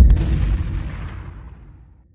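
A deep boom sound effect: one heavy hit whose low rumble fades out over about two seconds.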